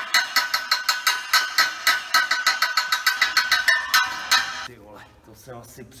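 A hammer driving a pin into an aluminium stage truss in a fast, even run of blows, about five a second, each with a metallic ring. The hammering stops about three-quarters of the way through.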